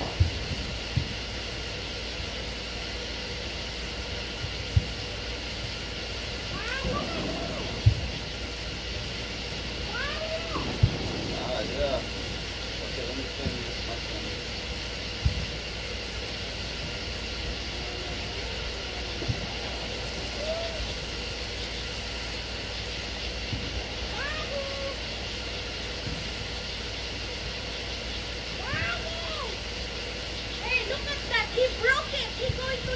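Voices of people and children calling at a distance, over a steady high background hum and a few sharp clicks.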